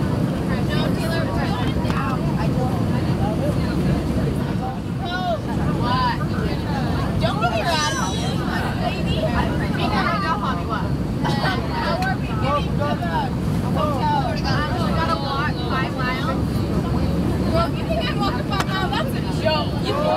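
Steady rumble of an Airbus A319-100's engines and airflow inside the cabin on final approach, with passengers chattering loudly over it.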